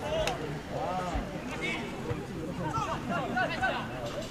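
Men's voices calling out on a football pitch, fainter than the commentary, over light outdoor background noise.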